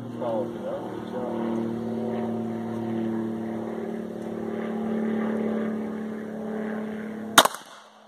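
A steady, low motor drone hums in the background. About seven seconds in, a Defenzia M09 less-lethal pistol fires a single shot, the loudest sound.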